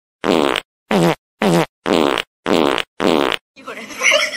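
Six short fart sound effects in quick succession, each a pitched blast under half a second long, separated by dead silence; a faint room background comes in near the end.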